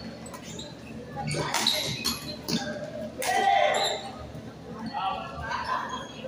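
Badminton rally in a large hall: several sharp racket strikes on the shuttlecock and short squeaks of shoes on the court floor. A voice calls out loudly about three seconds in, with other voices around it.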